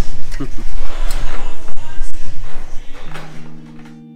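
Voices with a few short knocks and clatter for about three seconds, then acoustic guitar music comes in near the end as the other sounds fade away.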